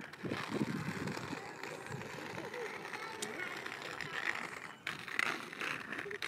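Indistinct voices in the background, too faint or distant to make out words.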